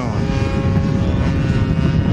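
Converted Homelite 30 cc string-trimmer engine in the RC airplane, running in flight and holding a steady pitch. It is fitted with a bigger Walbro carburettor and a Pitts-style muffler.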